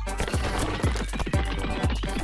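Upbeat background music with a steady drumbeat, about two beats a second.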